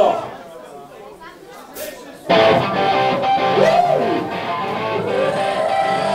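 Crowd chatter with a loud shout at the start; about two seconds in, a loud strummed electric guitar chord comes in suddenly and rings on, with a held note sliding up and down in pitch, as the live band starts playing.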